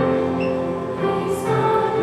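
Mixed high school choir singing in harmony, holding long notes that change about once a second.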